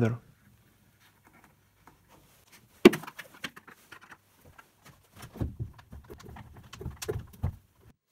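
A plastic bucket being handled while wood screws are driven by hand with a screwdriver from inside it. There is a sharp knock about three seconds in, then irregular small clicks and scrapes.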